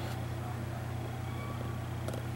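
Steady low background hum of room tone, with no distinct event.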